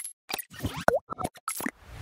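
Cartoon-like pop and click sound effects of an animated logo sting, about eight quick pops with a short swooping glide in pitch about a second in.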